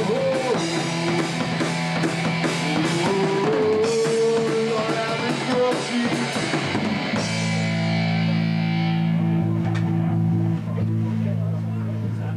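A live rock band of two electric guitars and a drum kit playing loud and full. About seven seconds in the drums stop and held guitar chords are left ringing steadily: the song's closing chord dying out.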